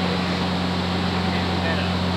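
A steady low hum over constant background noise, unchanging throughout.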